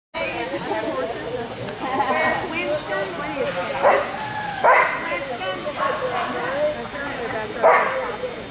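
Dogs barking in an agility hall over a background of people talking, with three louder sharp barks at about four seconds, just under five seconds, and near the end.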